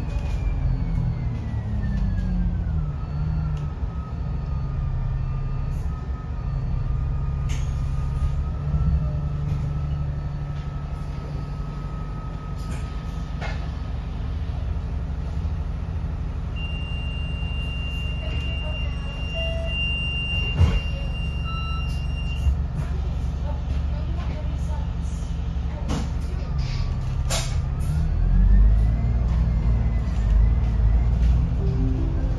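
Alexander Dennis Enviro500 double-decker bus heard from the upper deck: a steady low engine drone with a whine that falls in pitch as the bus slows in the first few seconds and rises again near the end as it pulls away. There are occasional sharp knocks and rattles from the body.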